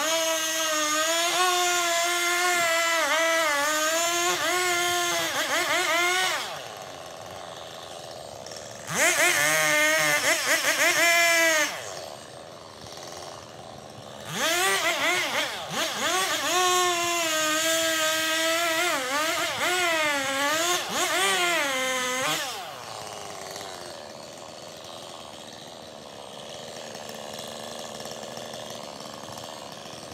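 Husqvarna 390 XP two-stroke chainsaw bucking logs: three cuts at high revs, the engine pitch dipping and wavering as the chain works through the wood, with quieter gaps between them. After the third cut, about two-thirds of the way in, it stays much quieter.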